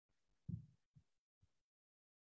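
Near silence broken by three dull low thuds: the loudest about half a second in, then two fainter ones about half a second apart.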